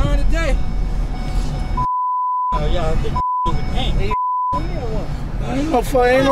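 Three censor bleeps, steady tones near 1 kHz, that replace the soundtrack to blank out swearing. The first, about two seconds in, is the longest; two short ones follow. Between them, men's shouting voices and the low rumble of a van cabin carry on.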